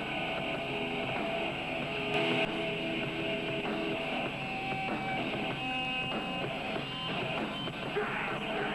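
Heavy rock band playing live, with electric guitars to the fore over drums, in an instrumental passage without singing.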